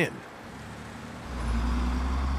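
Sound effect of a large truck's engine: a low, steady rumble that starts about a second in.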